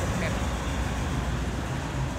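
Steady low vehicle rumble, like traffic or an idling car nearby, with faint distant voices.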